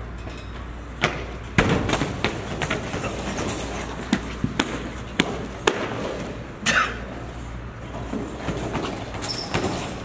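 Scattered thuds and knocks of sneakers and a body hitting a hardwood floor as a man tumbles and lands, over a steady low hum.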